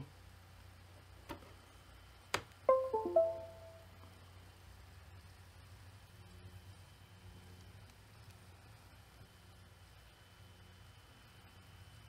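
A click, then the Windows device-connect chime: a short run of a few clear notes that fades out within about a second, the laptop signalling that it has detected the newly plugged-in USB hard drive, which had not been recognised before its solder joint was re-flowed.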